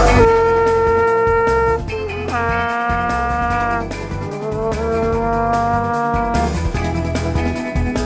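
Plastic vuvuzela blown in three long blasts, each a held horn note, the first lower in pitch than the other two. Background music with a steady drum beat plays throughout.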